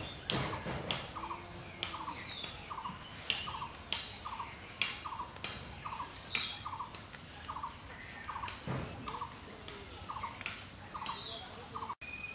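Jute leaves being plucked from their stems by hand, with crisp snaps and rustles of the leafy stalks. A bird calls in a steady rhythm about once every three-quarters of a second, with other birds chirping.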